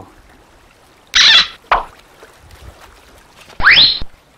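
A short, loud noisy burst about a second in, followed by a smaller one, then a quick rising whoosh near the end, the kind of sound effect edited in at a picture cut.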